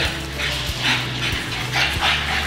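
French bulldog puppies making a few short dog noises as they play and tussle over a toy, about a second in and again near the end.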